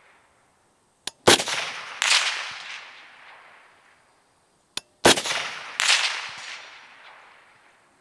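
Two shots from a suppressed DRD Paratus rifle in .308 Winchester, about four seconds apart. Each shot is followed less than a second later by a second loud report that fades away slowly.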